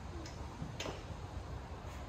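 Faint clicks and light shuffling of a person climbing out of a car through its open door, over a low steady rumble.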